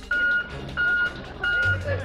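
A road roller's reversing alarm beeping: three evenly spaced single-tone beeps over the low rumble of its running engine.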